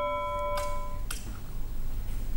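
News-bulletin sting: a struck bell-like chime with several overtones ringing out and fading away about a second in, with a couple of short ticks.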